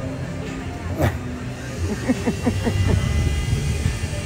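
Laughter: a short run of falling-pitch laughs about two seconds in, over a steady low rumble like a motor running nearby.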